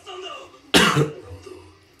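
A man coughs once, a single sharp cough about a second in.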